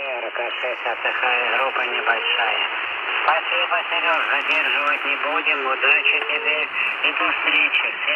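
A voice transmission on the 40-meter amateur band received in lower sideband through a Radtel RT-950 Pro handheld's speaker. The voice is narrow, cut off below and above, over a steady hiss of band noise.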